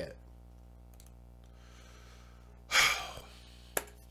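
A faint steady hum, then about two-thirds of the way in one short breathy exhale from a man at a close microphone, followed by a single sharp click near the end.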